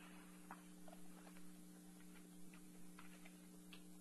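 Near silence: room tone with a faint steady hum and a few faint, scattered small clicks.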